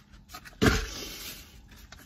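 A sudden thump about half a second in, followed by about a second of fading plastic shopping-bag rustling as items are handled.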